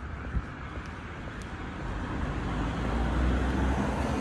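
Street traffic noise, with a passing car's rumble swelling to its loudest about three seconds in.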